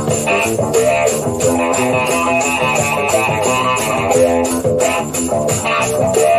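Recorded flamenco-rock fusion instrumental: electric guitar playing plucked melodic lines over bass and percussion.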